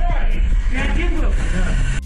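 A rescuer shouting 'Пострадавший живой!' ('The casualty is alive!') over a loud, steady rumble and rustling handling noise from a body-worn camera.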